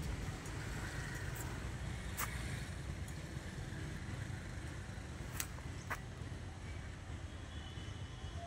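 Steady low outdoor background rumble, with three short sharp clicks about two, five and six seconds in.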